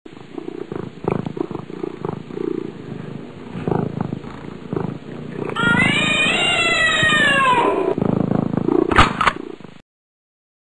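A cat purring, then one long meow that rises and falls in pitch. Two sharp clicks follow near the end, and the sound then cuts off suddenly.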